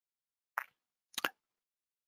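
Two short computer mouse clicks, about two-thirds of a second apart. The second is a quick double click, like a button pressed and released.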